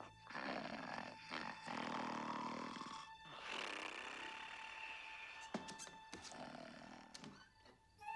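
A sleeping cartoon dog snoring in two long, rasping breaths over soft background music, with a short knock about five and a half seconds in.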